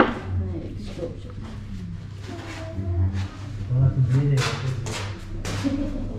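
Indistinct voices talking in a room. A few short sharp noises break in near the end.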